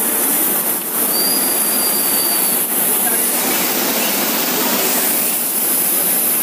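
Coaches of a departing passenger train rolling steadily over the rails, with a thin, high wheel squeal about a second in that lasts roughly a second and a half.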